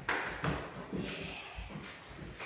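A German Shepherd's paws and claws tapping and scuffing on a wood-look floor, mixed with a person's footsteps: irregular steps, with a sharp knock right at the start.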